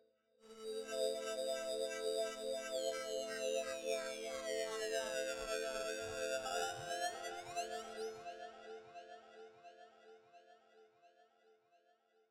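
Techno breakdown without drums: a sustained synthesizer chord sets in about half a second in, with a sweep of high tones gliding down and back up in the middle, then fades out toward the end.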